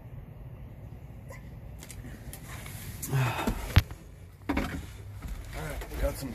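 Handling noise at close range: rustling, a brief murmured vocal sound about three seconds in, then one sharp click a little under four seconds in, with more rustling after it.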